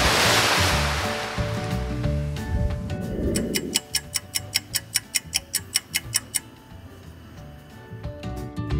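Granulated sugar poured from a bag into a pot of pomegranate juice: a loud hiss that fades away over the first two seconds or so, over background music. Midway comes a quick, even run of light ticks, about five a second, lasting a couple of seconds.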